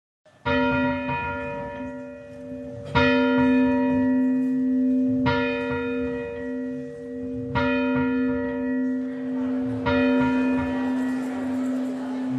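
A single church bell tolls five times, a stroke about every two and a half seconds. Each stroke rings on under the next, leaving a steady hum between strokes.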